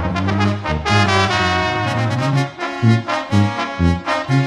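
Zapotec brass music: trumpets and trombones play a melody over a low bass line that moves about twice a second.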